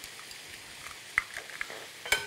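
Steady faint sizzling from two frying pans on a gas hob, with a few light clicks of eggshells being cracked over a glass bowl after about a second.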